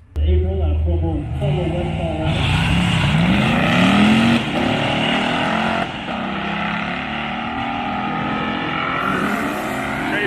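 A drag-racing car's engine accelerating hard down the strip, rising in pitch with a drop about four seconds in, then running at a steady note.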